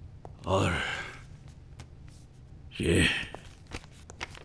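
An elderly man's voice saying two short words a couple of seconds apart, with faint clicks in the pauses between them.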